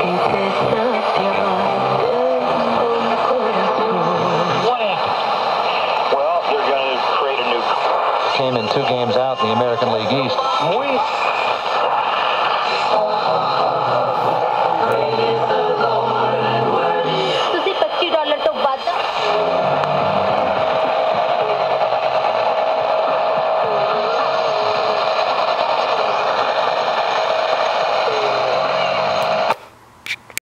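Sony TFM-1000W transistor radio's speaker playing weak, distant AM stations buried in static, with faint speech and music fading in and out as the dial is tuned. A burst of crackling comes about two-thirds of the way through. After it a steady whistle sits under the reception until the sound cuts off just before the end.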